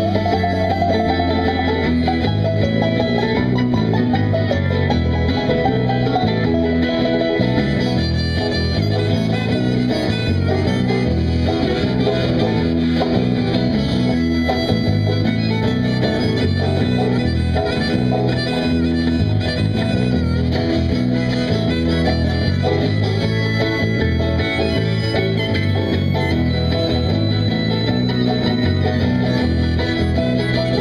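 Live acoustic band playing an instrumental stretch on acoustic guitars, five-string banjo and electric bass, with a steady, even beat and no singing.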